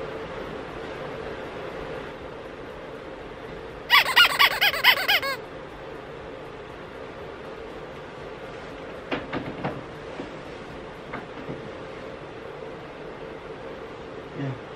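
A quick run of about seven high, squeaky pulses about four seconds in, over a steady low hum, with a few faint clicks later on.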